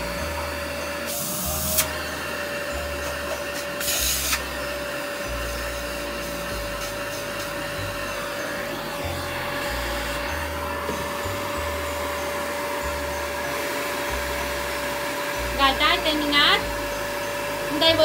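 Vacuum cleaner running with a steady whine while its hose nozzle is poked at a washing machine's drum, with two brief louder rushes of hiss about one and four seconds in.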